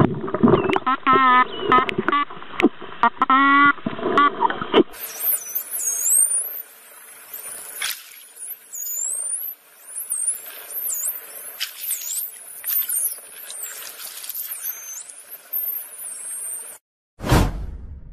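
Dolphins whistling and squeaking. For the first five seconds there are wavering, warbling squeals. After that come high whistles gliding up and down, with scattered sharp clicks. Near the end there is a single loud thump.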